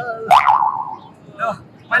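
A comic 'boing'-style sound effect: a sharp start, then a short wavering tone that falls away within about half a second. Brief snatches of a man's voice follow near the end.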